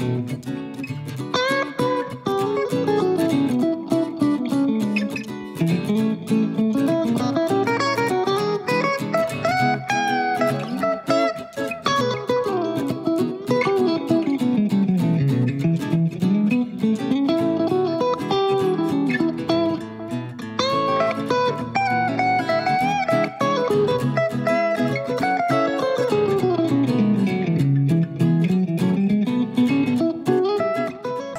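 Background music: plucked guitar playing a winding melody that rises and falls, with steady picked notes underneath.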